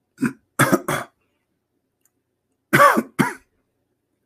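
A man clearing his throat and coughing in short, sharp bursts: three in the first second, then two more near the end.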